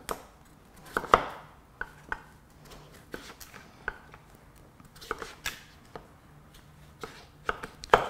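Chef's knife slicing through raw peeled butternut squash onto a wooden chopping board: a series of irregular sharp knocks as the blade strikes the board, the loudest about a second in.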